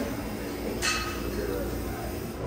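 Steady low machine hum with a faint steady tone, from a drink station's ice machine and soda fountain, with a brief glassy clink a little under a second in.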